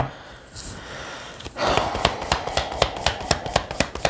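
A deck of tarot cards shuffled by hand. A soft rustle of cards comes first, then a fast run of card flicks starts about one and a half seconds in and keeps going.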